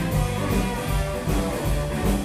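Live ska band playing, with electric guitar prominent over bass and drums in a steady beat.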